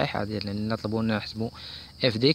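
Speech only: a man talking, then a short pause with faint hiss near the end.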